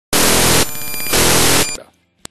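Harsh burst of garbled, distorted digital noise with tones mixed in. It cuts in abruptly just after the start, dips briefly in the middle and drops off sharply near the end: a corrupted audio stream.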